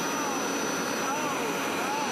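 Hoover Power Scrub Elite upright carpet cleaner running: a steady, even motor and suction noise with a thin high whine.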